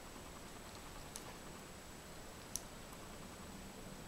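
Two soft clicks of needle-nose pliers working thin copper wire, about a second in and again about a second and a half later, over quiet room hiss.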